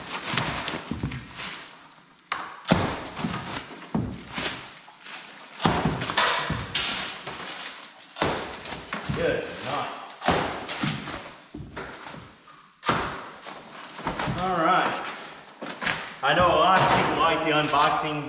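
Plastic wrap and cardboard packaging being cut and torn off boxed car-lift parts: a series of sudden rips, crinkles and thuds every second or two. A man's voice comes in near the end.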